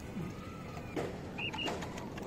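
Caged quail calling faintly, with two short high chirps about a second and a half in.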